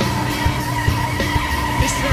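Car tyres squealing in a long skid over up-tempo music with a steady drum beat.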